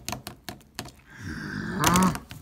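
Quick run of sharp clicks and taps from fingers working an iPhone 4, pressed repeatedly while the phone lags. A short voice-like sound follows near the end.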